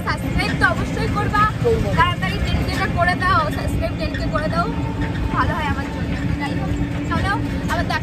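Voices talking over the steady rumble of a moving open-sided rickshaw, heard from the passenger seat, with a faint steady hum underneath.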